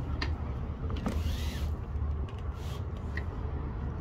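Steady low rumble of nearby road traffic, with a brief swish about a second in and a shorter one near the end, from the travel trailer's pleated door screen being slid.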